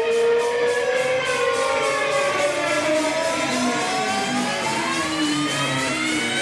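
Rock music: an electric guitar holds a sustained chord that slides slowly and smoothly upward in pitch, over light, evenly spaced cymbal ticks.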